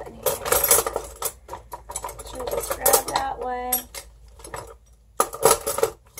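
Metal utensils clinking and rattling against each other as someone rummages through a container of kitchen tools, searching for a small knife.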